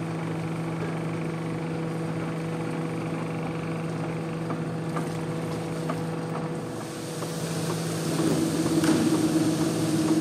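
Large industrial carpet-processing machine running with a steady hum. About seven seconds in it dips briefly, then runs louder with a rushing hiss added as the rolled carpet is drawn into it.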